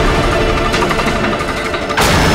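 Loud dramatic sound effect from a TV serial's background score: a dense, low, rapid rattling rumble.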